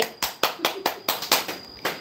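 Hands clapping: about eight quick, sharp claps in a row, in applause for a song just sung.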